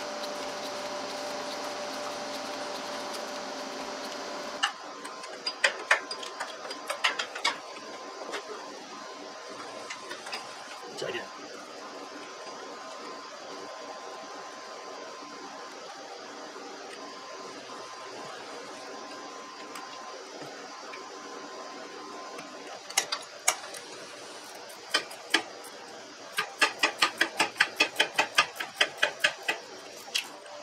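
Hand tools clicking and knocking on metal during work on a Scag Tiger Cub's steering linkage. Near the end comes a fast, even run of clicks, about four a second, from a wrench ratcheting. At the start a steady hum cuts off suddenly about four and a half seconds in.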